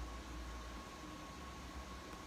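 Faint room tone: a steady low hum under an even hiss, with a thin steady high tone running through it.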